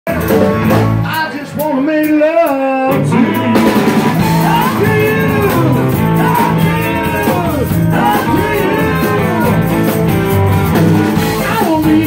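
Live electric blues band: a male singer with electric guitar over drums. The band drops out for about a second and a half under a held, wavering sung note, then comes back in and plays on.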